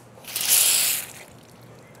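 A shaken plastic bottle of club soda twisted open: a sharp hiss of escaping gas, about a second long and fading, as the soda fizzes over.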